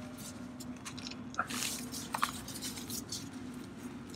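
Faint clicks and rubbing of gloved hands working the plastic cap on an RV black-tank drain outlet, over a low steady hum.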